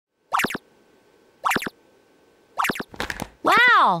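Three short swishes about a second apart from a wagging furry robot tail, then a high, cartoonish voice says "Wow!" with a wobbling pitch.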